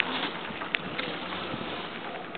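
Steady outdoor background hiss with a couple of faint clicks about three-quarters of a second and a second in.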